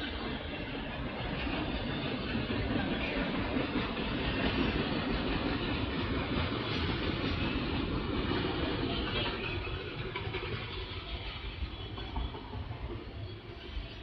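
Freight train of autorack cars rolling past: a steady noise of steel wheels on rail, swelling through the middle and easing toward the end.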